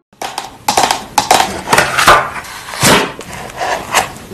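Long acrylic nails scratching and tapping on a cardboard box of Melano CC sheet masks held close to the microphone: a dense run of crackly scratches starting just after a moment of silence.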